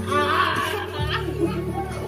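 A young child's high-pitched laughing squeal and voices over background music, whose steady low bass line moves to a new note about a second in.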